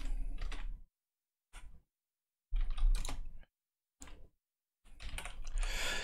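Typing on a computer keyboard in about five short bursts separated by brief silences, as a line of text is keyed in.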